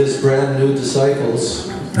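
A man speaking through a microphone and PA, in Russian.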